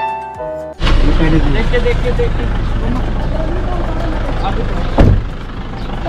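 Piano music cuts off abruptly under a second in, giving way to street noise: a vehicle running with a steady low rumble and faint voices in the background. A single loud thump comes about five seconds in.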